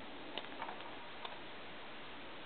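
A few faint, light clicks from a thin metal pick working at the keypad circuit board and its ribbon-cable connector, over a steady background hiss.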